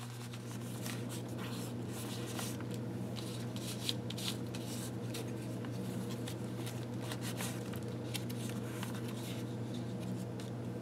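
Old, fragile paper rustling and crinkling in short, irregular bursts as hands handle and press layers of papers and envelopes together in a handmade glue-book journal. A steady low hum runs underneath.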